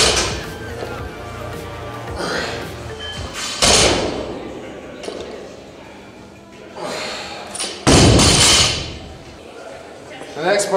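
Loaded barbell with bumper plates set down on a rubber gym floor between deadlift reps: three heavy thuds, one at the start, one about three and a half seconds in and one about eight seconds in, each with a short ring.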